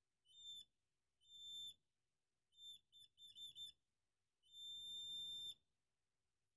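Buzzer of a one-transistor water-level alarm sounding a steady high tone whenever the two wire probes touch the water and close the circuit. There are two short beeps, then a run of quick stuttering beeps as the contact makes and breaks, then one longer beep of about a second.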